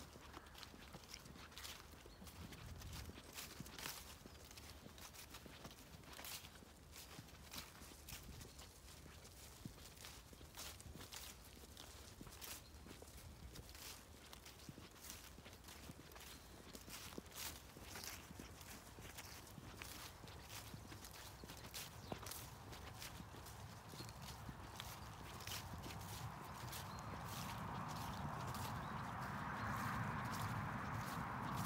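Footsteps of a person walking on grass, a steady run of soft short steps at a walking pace. A rushing hiss swells over the last few seconds.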